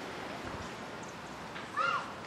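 Steady background hiss, then near the end a short pitched animal cry that rises and falls.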